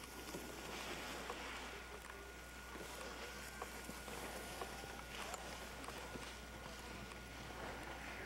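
Faint steady hiss and low hum from an old camcorder's own recording noise, with a thin steady whine and a few scattered faint clicks; no distinct sound stands out.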